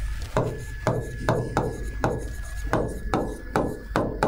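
A pen tapping and knocking on the glass of an interactive touchscreen board while handwriting: about ten irregular taps, with a faint steady high whine and a low hum underneath.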